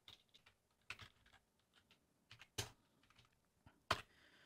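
Computer keyboard typing: a handful of faint, scattered keystrokes, the loudest about two and a half seconds in and just before the end.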